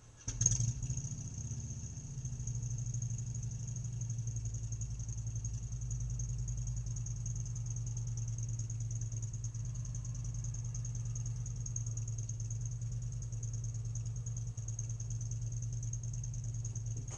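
Motorcycle engine starting about half a second in with a brief loud burst, then idling steadily.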